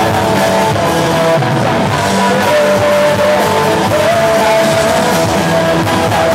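Live punk rock band playing loud: electric bass, electric guitar and drums, with long held notes over the top.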